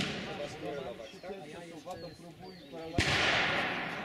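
Black-powder revolver fired once about three seconds in: a sharp shot followed by a long echoing tail. The tail of a shot fired just before fades out at the start.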